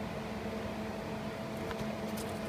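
A steady mechanical hum with a faint tone, holding level throughout, with no distinct events.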